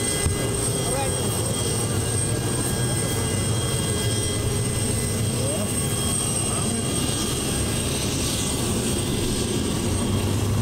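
Aircraft engine running steadily: a constant drone with a high, unchanging whine.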